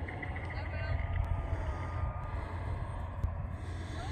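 Low, uneven rumble of wind buffeting the microphone in an open field, with a few faint high chirps in the first second.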